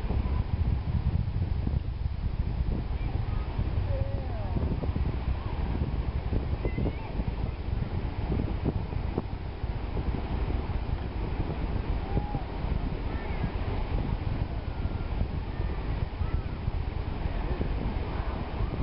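Distant launch rumble of Space Shuttle Atlantis, a steady low thunder-like rumble with crackle, mixed with wind on the microphone and faint voices of onlookers.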